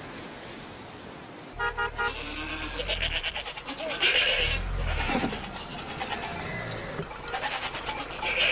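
A steady hiss, then, from about a second and a half in, a low engine rumble with several animal bleats and a brief pulsed horn-like tone over it.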